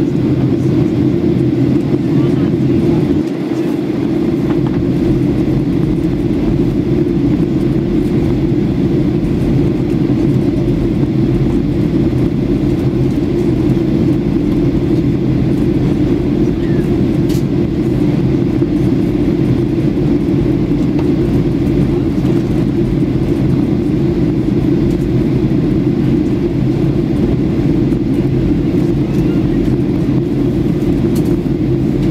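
Steady in-flight cabin noise of a Boeing 737-800, the CFM56 engines and rushing airflow heard inside the cabin as a loud, even low roar. The level dips briefly about three seconds in, then holds steady.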